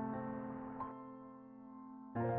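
Soft new-age background music: sustained piano chords, with a fresh note struck about a second in and left to fade.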